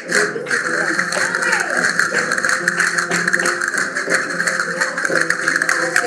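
Live flamenco music: guitar with dense, rapid clicking and tapping from the dancers.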